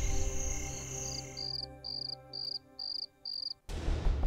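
Cricket chirps used as a night-time ambience effect: short, high chirps about twice a second over the fading end of background music. Loud music with deep drum hits comes in suddenly near the end.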